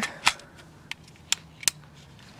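A handful of short, sharp plastic clicks, about four in two seconds, as a power plug is pushed and seated into a power-strip outlet.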